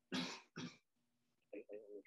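A man coughing, two short coughs in quick succession, before his speech picks up again near the end.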